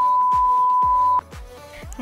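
Steady test-tone bleep of the kind that goes with TV colour bars, one unwavering pitch that cuts off suddenly a little past one second in, over background electronic music with a steady kick-drum beat.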